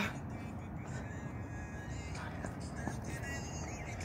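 Steady low rumble of outdoor background noise, with faint voices in the distance about two seconds in.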